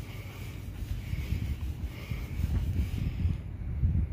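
Wind buffeting and handling noise on a phone microphone held close to the paint: an uneven low rumble that grows busier in the second half.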